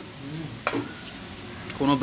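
Table sounds during a meal: a single sharp click of a utensil on a steel plate about two-thirds of a second in, over a steady hiss, with a faint voice in the background.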